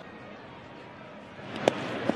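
Ballpark crowd murmuring. About one and a half seconds in, a baseball pitch lands in the catcher's mitt with a single sharp smack, and the crowd noise swells.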